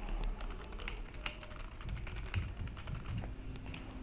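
Typing on a computer keyboard: a quiet run of keystroke clicks at uneven spacing.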